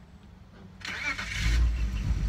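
A car engine nearby: a burst of hiss about a second in, then a low engine rumble.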